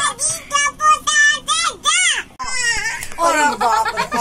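Young children's high-pitched voices in play: a run of short, arching shrieks and sung calls, with child talk near the end.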